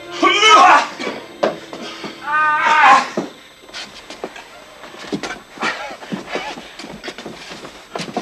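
Two drawn-out vocal cries with bending pitch, one right at the start and one about two and a half seconds in, over a faint music bed. They are followed by a run of soft knocks and clicks.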